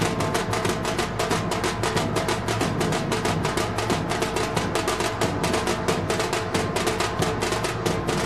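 Music driven by fast, steady drumming, about seven strokes a second, over sustained instrument notes.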